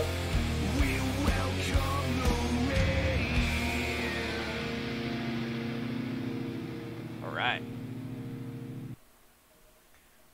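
Ending of a heavy rock band's song: the full band plays for the first few seconds, then a held chord rings out and cuts off suddenly about nine seconds in, leaving near quiet.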